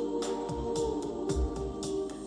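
Live ambient electronic music: sustained keyboard chords over a soft beat of short high ticks, about three a second, with two low bass thumps.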